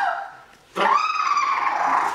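A person's voice in a long, high-pitched yell that starts suddenly about three-quarters of a second in, after a brief lull, and fades away near the end.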